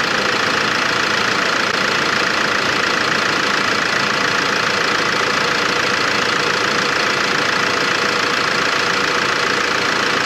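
Old Mercedes Sprinter van engine idling steadily, heard close up under the open bonnet, just after a restart with newly replaced fuel lines.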